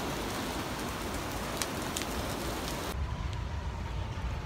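Heavy rain of big drops falling on a street, a dense steady hiss with a few sharper drop hits. About three seconds in it cuts to a quieter, duller rain hiss.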